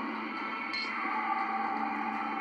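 Soft background music from a TV drama's soundtrack, heard through a screen's speakers in a small room, with steady held tones and no dialogue.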